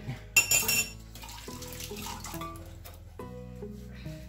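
A wire whisk clinking against a bowl as eggs are beaten, with a quick run of loud clinks about half a second in and fainter clinks after. Acoustic guitar music plays underneath.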